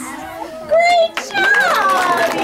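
Young children's high-pitched voices calling out, with one short held note about three-quarters of a second in and a falling cry in the second half.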